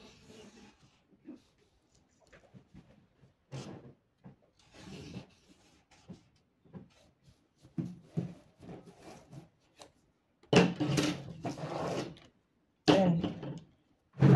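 Felt-tip marker scraping along brown pattern paper and a plastic set square sliding and rubbing on the paper, in short, faint strokes. Near the end come two much louder bursts of sound.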